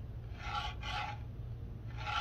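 A plastic plate carrying test pins being slid by hand in the sensor bracket and across the textured board, scraping in a few short rasps, over a low steady hum.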